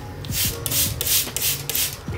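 Trigger spray bottle misting a potted pothos plant, a quick run of short hissing squirts, about three a second.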